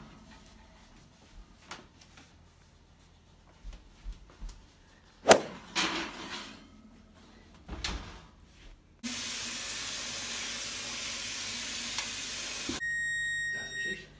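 Kitchen handling sounds: a few knocks and clatters of the oven and its rack, one sharp knock about five seconds in. From about nine seconds a steady hiss starts and stops abruptly, and near the end it gives way to a steady high electronic beep tone.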